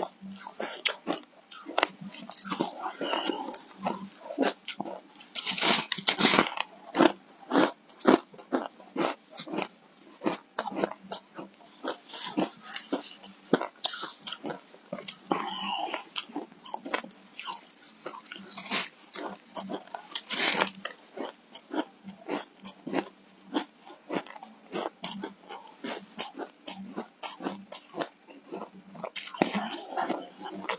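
Dense, irregular crunching and crackling of frozen shaved ice coated in matcha powder as it is squeezed into a ball in a gloved hand and bitten. There are louder bursts of crunching about six seconds in and again about twenty seconds in.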